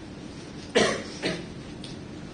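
A person coughing twice, about half a second apart, the first cough sharp and loud.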